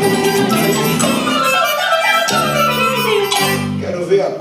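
A Brazilian jazz band plays live with drum kit, percussion, a wind instrument and a woman's voice over strong bass notes. The tune stops abruptly at the very end.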